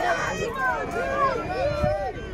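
People talking, several voices overlapping, with a background of crowd chatter.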